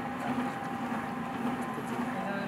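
Light helicopter's engine idling on the ground: a steady hum with a low tone and a higher one.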